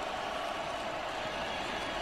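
Steady stadium crowd noise from a college football broadcast, an even crowd din with no single event standing out.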